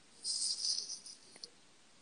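Pen nib scratching on paper as a cursive letter is written, a soft scratchy stroke lasting about a second, followed by a faint tick.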